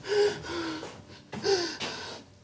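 A man gasping: two sharp, breathy gasps with a voiced catch, about a second and a half apart, with a weaker breath between them. They are the distressed breathing of a man in a fever who fears he is dying.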